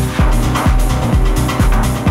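Progressive psy-techno from a DJ set, with a deep four-on-the-floor kick drum whose pitch drops on each hit, about two beats a second, coming in a moment after the start.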